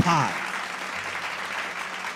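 Audience applauding: a steady patter of hand claps.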